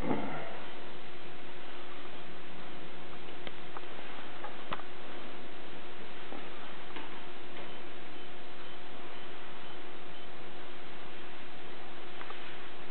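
A few light clicks from a bass guitar being handled and turned for inspection, over a steady hiss with a faint hum.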